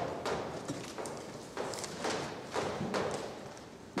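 Chalk writing on a blackboard: a series of short taps and scratchy strokes, irregularly spaced, as a formula is written out.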